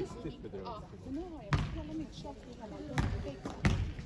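A basketball bouncing three times on the sports hall floor, unevenly spaced, each bounce a heavy thud with a short echo from the hall.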